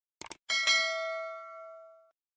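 Subscribe-animation sound effect: a quick double mouse click, then a notification bell dinging twice in quick succession and ringing out, fading over about a second and a half.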